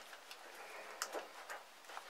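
Chicken wire being scrunched and bent by hand, giving a few faint metallic clicks and ticks.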